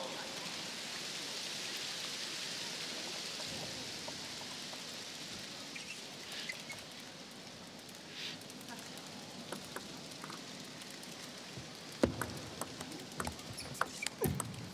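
Spectators applauding after a point, the hiss of clapping fading away over several seconds. About twelve seconds in, a table tennis rally begins: the celluloid-type ball clicking sharply off paddles and table several times.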